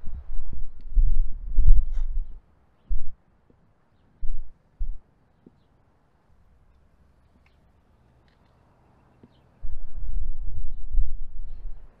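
Low, muffled rumbling and thumping on the microphone, loud at first and again near the end, with a few short bumps in between and a stretch of silence in the middle.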